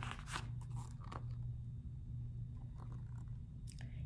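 Pages of a hardcover picture book being turned and handled: a few soft paper rustles and taps over a steady low hum.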